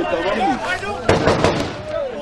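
A quick burst of about four sharp cracks, typical of gunfire, about a second in.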